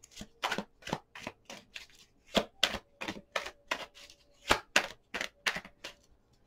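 Tarot cards being shuffled by hand: a quick, irregular run of sharp clicks and snaps, about three or four a second.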